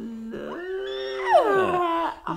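Wordless, drawn-out vocalizing from two people: a held sing-song note, joined by a high squeal that slides down in pitch about a second and a half in, the loudest moment.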